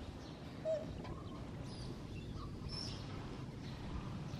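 A monkey's single short squeak about a second in, over a steady outdoor background with faint bird chirps.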